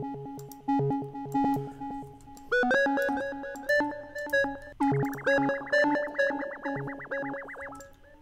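Software synthesizer notes from FL Studio's stock GMS synth being auditioned: short repeated notes at first, then higher notes with a brighter tone about two and a half seconds in. From about five seconds in comes a fast-wavering, quickly repeating note, which stops just before the end.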